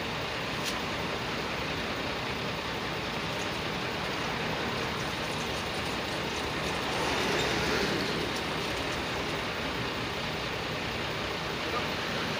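Water poured from a plastic gallon jug into a steel bowl, loudest about seven seconds in, over steady traffic noise.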